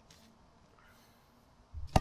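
Quiet background, then near the end a low rumble and one sharp smack of a tetherball being struck.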